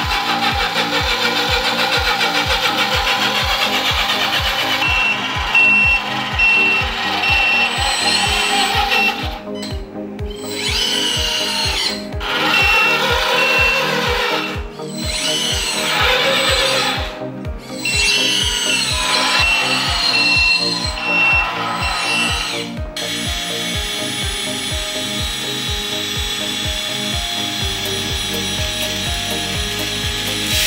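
Background music with a steady beat and sustained synth notes.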